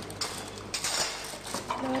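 Cutlery and dishes clinking and clattering at a breakfast table, in irregular bursts with the busiest clatter just under a second in.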